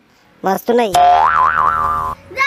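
A brief vocal sound, then a comic boing-style sound effect: a buzzy pitched tone that jumps up about a second in and wobbles up and down until it cuts off at the end.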